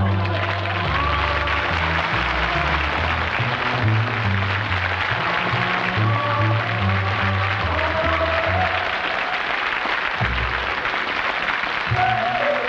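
Closing theme music with a stepping bass line, playing over studio audience applause.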